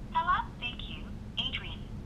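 Automated female voice of a phone call playing through a smartphone's speakerphone, thin and cut off like a telephone line, in a few short phrases answering the keypad press.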